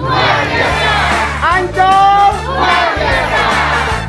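A group of voices chanting a short phrase in unison over backing music with a stepped bass line. The phrase repeats about every three seconds, each time ending in a long held note.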